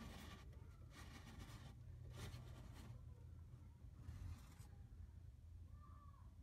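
Near silence over a low steady hum, with about four short, faint scratchy rustles.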